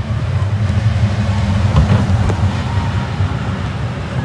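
Spider amusement ride's machinery running with a steady low hum, with a few faint clicks on top.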